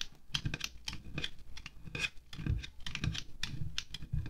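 Knife blade chopping and scraping through crumbled candle wax on a glass plate: a quick irregular run of crisp crunches and clicks, several a second, with low knocks among them.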